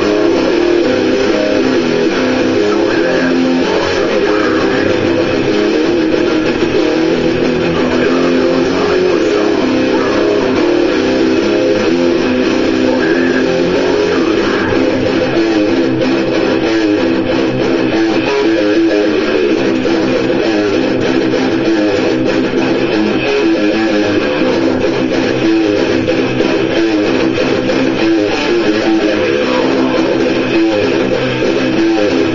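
Electric guitar strummed in chords, playing steadily and loudly.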